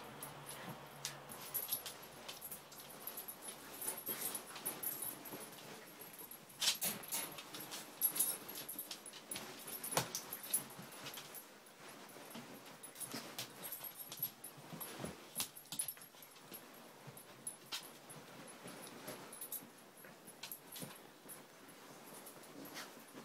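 Two Siberian husky puppies play-fighting, scuffling and rustling against soft bedding, with occasional small whimpers. The scuffles come as irregular quick clicks and rustles and are loudest about a third of the way in.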